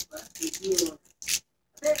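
A girl's voice, mumbling without clear words, and a short crinkle of tape being handled about a second in.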